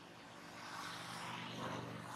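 Engine noise of a passing vehicle, a steady hum under a rushing sound that swells to its loudest near the end.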